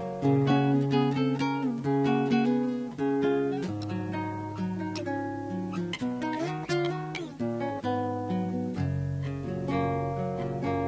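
Nylon-string classical guitar playing an instrumental passage between verses of a cielito, chords strummed in a steady rhythm over moving bass notes.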